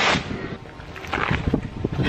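Wind buffeting the camera microphone outdoors, an uneven low rumble, with two short bursts of noise: one at the start and one just after a second in.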